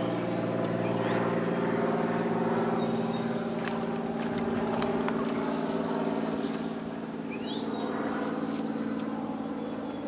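Steady low drone with two short rising bird chirps, about a second in and again near the end, and a few sharp clicks in the middle.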